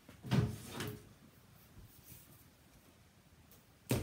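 Handling noise as the camera is repositioned: a muffled bump and rustle about half a second in, then a single sharp knock near the end.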